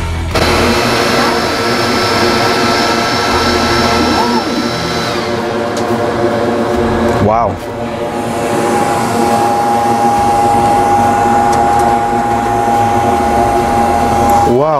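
xTool S1 enclosed diode laser engraver running while it engraves slate: a steady whir with several held whining tones. There is a short break about seven seconds in, after which a different steady tone takes over.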